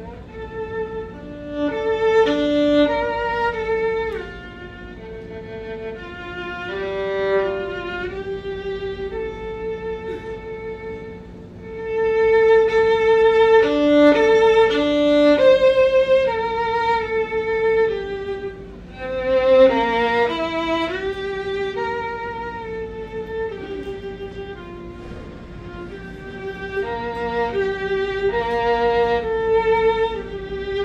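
Solo violin played unaccompanied: a continuous melodic passage of bowed notes, swelling louder about twelve seconds in and again near the end.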